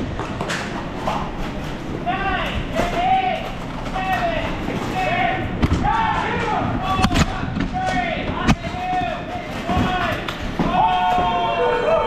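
Voices calling out repeatedly in a large indoor hall, with scattered sharp knocks and clacks, and one longer held call near the end.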